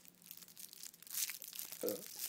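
Plastic wrapper of a peppermint candy crinkling as it is handled and torn open, in uneven rustles loudest about a second in.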